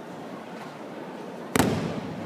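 Judo breakfall: the thrown partner lands on the tatami with one sharp, loud slap about a second and a half in, echoing briefly in the hall.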